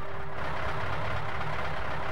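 A large sedan driving past: engine running under a steady rush of tyre and road noise.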